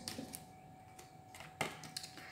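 Quiet handling of cardboard flashcards: a few faint taps and rustles, with one sharper click about one and a half seconds in.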